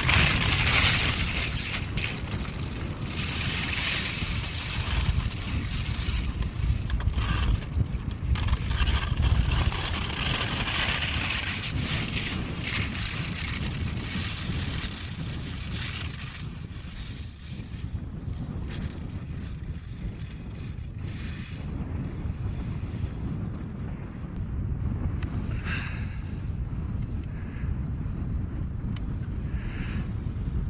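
Wind buffeting the microphone: a steady low rumble with hissy gusts, strongest in the first dozen seconds.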